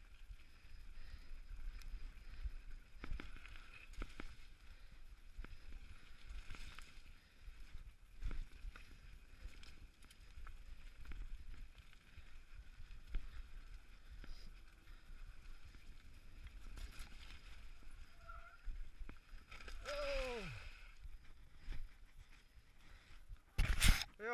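Mountain bike rolling fast down a rocky, loose-gravel trail: tyres crunching over stones and the bike rattling over bumps, with wind on the helmet-camera microphone. Near the end a sudden loud clatter as the rider crashes.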